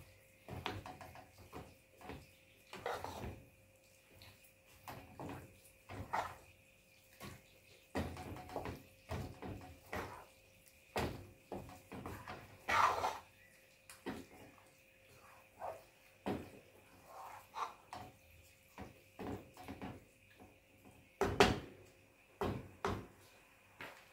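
Wooden spoon stirring a thick stew in a non-stick pot, knocking and scraping against the pot's sides and bottom in irregular strokes, one or two a second. Two louder knocks stand out, one about halfway and one near the end.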